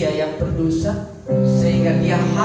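Live worship band music, with bass guitar and electric guitar under sustained chords. The music dips briefly about a second in and then comes back fuller.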